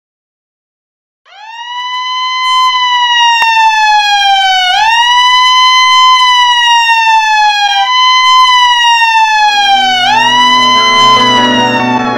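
A siren wailing: each cycle swoops up quickly and then slides slowly down in pitch, about every three seconds, starting about a second in. Low held music notes come in under it near the end.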